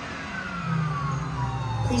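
Kang & Kodos' Twirl 'n' Hurl spinner ride winding down at the end of its cycle: a whine that falls steadily in pitch over a low hum as the ride slows to a stop.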